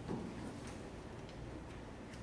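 Faint light clicks, roughly one every half second, over quiet room tone, with a soft low knock just after the start.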